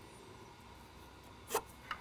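Near quiet: a faint steady background, broken by one short, brief sound about one and a half seconds in and a smaller one just before the end.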